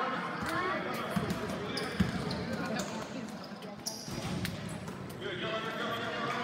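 Basketball being dribbled on a hardwood gym floor, a few sharp bounces with the loudest about two seconds in, under indistinct chatter of players and spectators.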